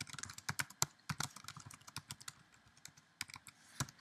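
Typing on a computer keyboard: a quick, uneven run of key clicks as a short text command is typed, with one louder keystroke near the end.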